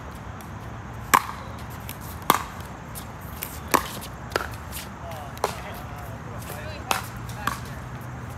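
A pickleball rally: paddles striking the hard plastic ball in a series of about seven sharp pops, spaced irregularly roughly a second apart.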